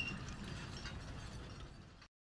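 The fading tail of a short intro jingle: a brief high tone at the start, then a faint, finely crackling texture that dies away.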